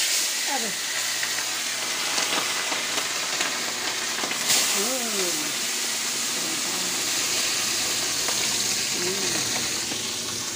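Fish frying in hot oil in a wok: a steady, loud sizzle, flaring up briefly about four and a half seconds in.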